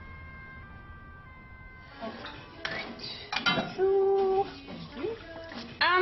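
Soft music with long held notes, ending about two seconds in. Then people talking, with some clatter of plates.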